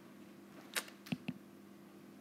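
Three light clicks in quick succession, starting about three quarters of a second in, over a faint steady electrical hum.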